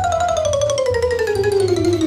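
A comic falling sound effect: one long descending glide made of rapid repeated notes, laid over background music with a steady low beat.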